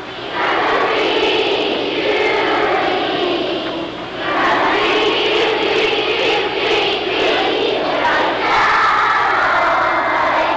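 Steady din of a large crowd of children's voices filling a school gymnasium.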